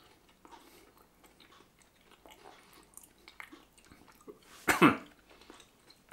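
A person chewing a medium-firm fruit gum with faint, irregular soft mouth sounds. One louder short mouth sound comes about five seconds in.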